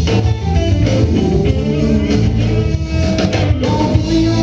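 Live rock band playing an instrumental passage without vocals: electric guitar over electric bass and a drum kit.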